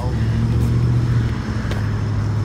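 A steady low motor hum, with a single faint click near the end.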